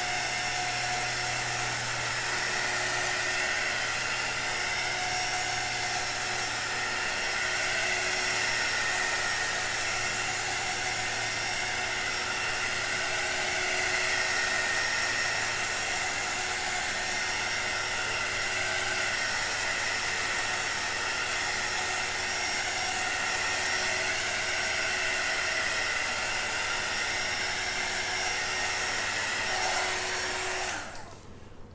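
Handheld electric heat wand running steadily: a constant fan whir with a thin high whine, held over wet acrylic paint to heat it and bring up cells.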